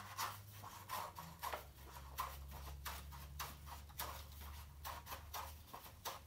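Scissors cutting through a sheet of construction paper: a steady run of short snips, a few a second.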